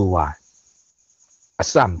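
A man talking, breaking off for about a second before he goes on; a faint, steady, high-pitched tone is left in the pause.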